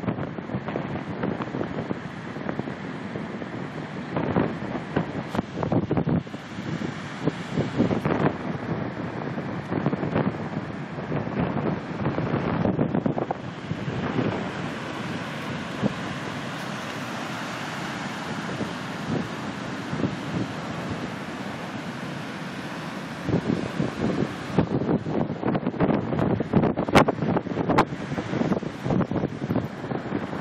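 Wind buffeting the microphone in uneven gusts over the wash of breaking ocean surf. For several seconds in the middle the gusts ease and a steady hiss of surf takes over, before the gusting picks up again.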